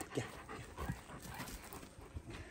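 A large Kangal dog panting with its tongue out.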